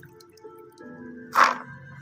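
Background music, with one short splash of water about one and a half seconds in from hands washing cardamom pods in a bucket of water.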